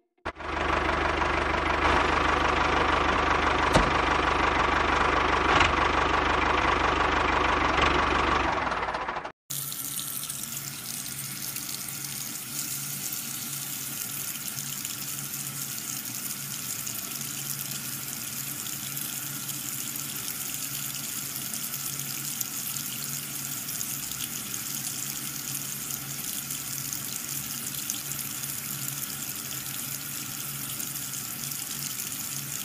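A small motor runs loudly and steadily for about nine seconds, then cuts off sharply. After that a thin stream of water from a small hose splashes steadily onto soil, with a faint steady hum underneath.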